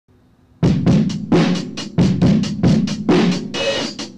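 Drum-kit beat of intro music, with kick drum, snare and cymbals hitting in a quick, steady rhythm, starting about half a second in.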